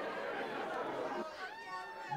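Indistinct chatter of a bar crowd, many voices talking at once, thinning out about a second in.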